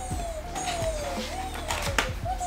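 A domestic cat meowing over and over: three drawn-out meows, each rising quickly and then sliding down in pitch. Light clicks come from plastic cat-food trays being handled.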